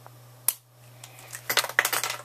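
A Sharpie marker being handled against the camera body: one sharp click about half a second in, then a quick run of clicks and scrapes near the end.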